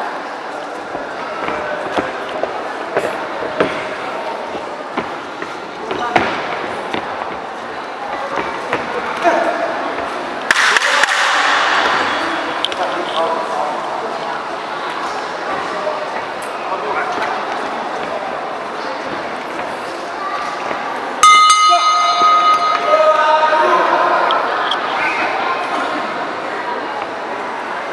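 Crowd chatter and shouts in a gymnasium during a boxing bout, with a few sharp knocks of gloves landing. About 21 s in, the ring bell is struck and rings out loudly, fading over a few seconds, marking the end of the round.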